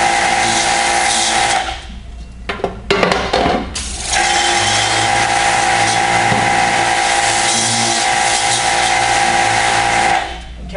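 Pressure washer running, its wand blasting water onto the mesh of a screen-printing screen with a steady motor hum under the spray. The spray stops for about two seconds, a few knocks sound in the gap, and then it starts again and runs on.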